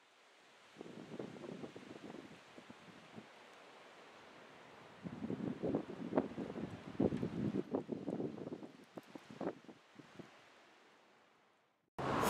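Faint wind buffeting the camera microphone in uneven gusts, one short spell about a second in and a longer one from about five seconds in.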